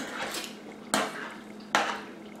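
A fork clinking and scraping against a dinner plate during a meal: three short strokes, the first at the very start, then one about a second in and another near the end.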